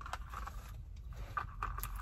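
Faint rustling and a few light knocks as a plastic iced-coffee cup is picked up and handled, over a low steady hum.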